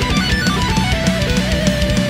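Instrumental passage of a metal band song: electric guitars, bass and a drum kit playing together, with no singing. A melody line steps down in pitch across the passage.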